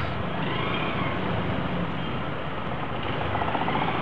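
Motorcycle engine running at low speed in stop-and-go traffic, under the steady hum of the cars and motorbikes around it.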